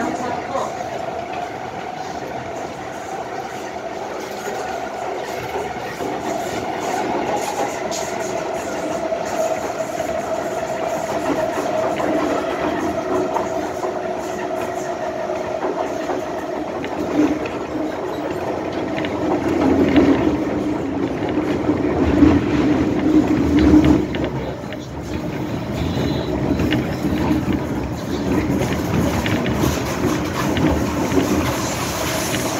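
Inside an MTR M-Train carriage under way: a steady motor whine over the rumble of wheels on rail, giving way to a lower hum and heavier rumble that grows loudest about 20 to 24 seconds in.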